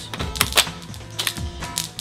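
A series of sharp plastic clicks and light rattles as a magazine loaded with plastic rounds is worked out of the magwell of a Tiberius T4 paintball marker.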